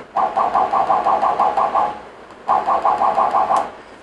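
FoxAlien CL-4x4 CNC router's Z-axis stepper motor jogging the spindle up and then down: two runs of a pulsing whine, about seven pulses a second, the first about two seconds long and the second about a second, with a short pause between.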